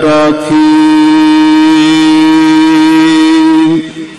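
Gurbani shabad being sung in a chanting style: a voice holds one syllable on a long, steady note for about three seconds, then stops just before the end.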